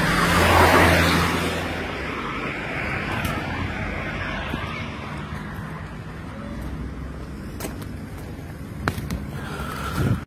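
Street traffic noise: a vehicle engine and tyre noise swell up about a second in as a vehicle passes close, then settle into a steady traffic hum. A few sharp clicks come near the end.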